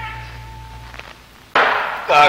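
Gamelan accompaniment to a Sundanese wayang golek performance on an old cassette recording. A held note fades away and a single sharp knock follows about a second in. Half a second later the ensemble comes back in suddenly and loudly with a clashing strike.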